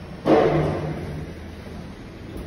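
Kone Ecodisc lift's automatic sliding doors opening, with a sudden loud clatter about a quarter second in that fades over about half a second, over a steady hum.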